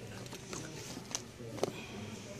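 Hands sorting through a pile of leather belts with metal buckles and hats: rustling and handling noise, with two short sharp clicks about half a second apart a little after one second in, over a steady room background.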